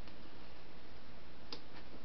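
Steady low hiss of room tone with one faint click about one and a half seconds in.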